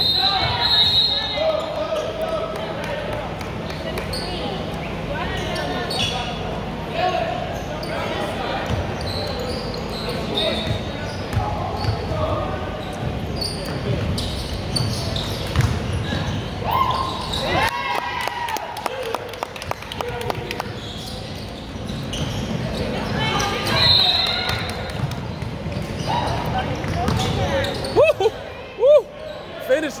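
Basketball game play in an echoing gym: a ball bouncing on the hardwood floor, sneakers squeaking a few times, and background chatter from players and spectators.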